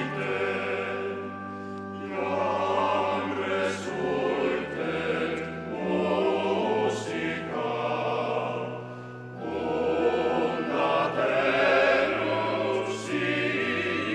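Choir singing a slow piece in long held notes, the chords changing every second or two, over sustained low bass notes.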